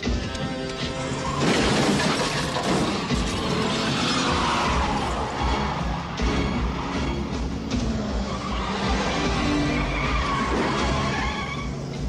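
Film action-scene soundtrack: dramatic music with a sudden loud crash-like burst about a second and a half in, followed by continuing noisy effects.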